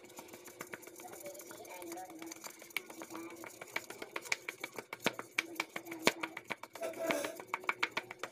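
Fingers pressing and pushing soft pizza dough out across a buttered aluminium pizza pan: a run of faint, light clicks and taps from the hand and pan, coming faster in the second half.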